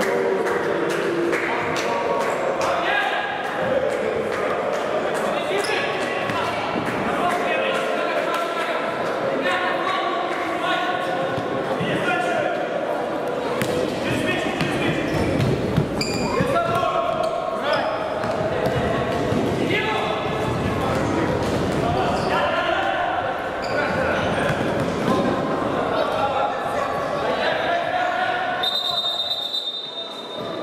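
Futsal ball being kicked and bouncing on a wooden hall floor, with players' shouts and voices echoing in the large gym. Near the end a short high-pitched whistle sounds as play stops.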